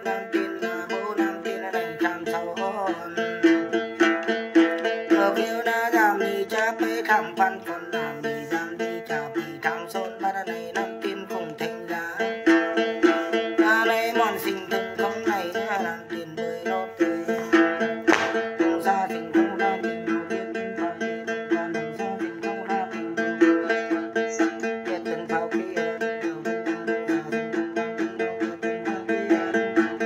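A đàn tính, the Tày–Nùng long-necked gourd lute, plucked in a steady repeating pattern. A woman sings a Then chant over it, her voice wavering on held notes.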